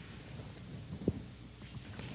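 Pages of a large altar missal being turned by hand, with a single soft thump about halfway through and faint paper sounds near the end, over a low room hum.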